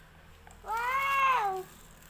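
A cat meowing once: a single drawn-out call just under a second long that rises and then falls in pitch, starting a little under a second in.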